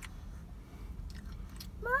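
A child chewing a mouthful of cheese pizza, faint soft clicks of the jaw and mouth over a low steady hum. Near the end a voice hums an approving "mmm" that rises and falls.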